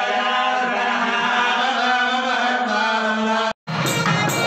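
Hindu temple priests chanting mantras over a microphone, one continuous chant on a steady held pitch. It breaks off in a sudden dropout about three and a half seconds in, and music with percussion starts just after.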